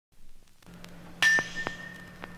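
A bell struck once about a second in, its single ringing tone holding on, over the low hum and a few clicks of a vinyl 45 record.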